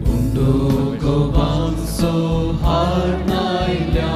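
A Konkani offertory hymn sung over a steady instrumental accompaniment, the sung melody moving from note to note.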